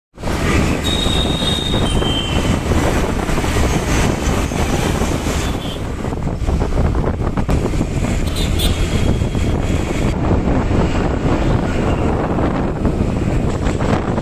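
Street traffic noise picked up from a moving vehicle: a loud, steady rumble of engines and road, with wind buffeting the microphone. A couple of brief high tones sound about one to two seconds in.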